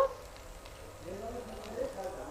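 Faint, distant voices murmuring in the audience.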